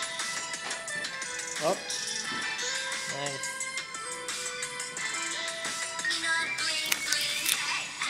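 Upbeat P-pop song playing for a dance, with voices over the music and a brief rising swoop about two seconds in.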